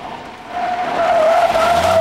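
Chrysler Crossfire's tyres squealing as the car corners hard through a pylon course. It is a steady high squeal that builds about half a second in.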